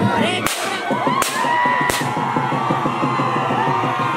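A gun fired three times, about two-thirds of a second apart, as a ceremonial honour salute, over a large crowd shouting and cheering.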